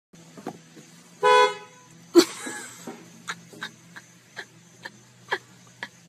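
A car horn gives one short blast about a second in, over a low steady hum. A second later comes a sudden loud burst of noise, then a few faint, irregular taps.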